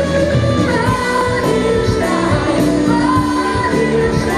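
A woman singing a worship song into a microphone, backed by a live band with electric bass, with held and gliding sung notes.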